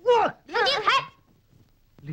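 Two loud human cries: a short one falling in pitch, then a longer wavering wail.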